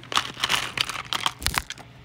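Clear plastic storage box handled and tilted, with plastic bead bracelets shifting inside it: a quick string of small clicks and rattles, the loudest knock about one and a half seconds in.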